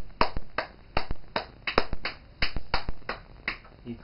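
A baby banging a spoon on a plastic activity-table toy: a quick, uneven run of sharp taps, about three or four a second.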